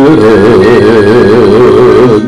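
Javanese gamelan playing loudly in a dense, unbroken passage, with one sustained tone wavering steadily up and down above it.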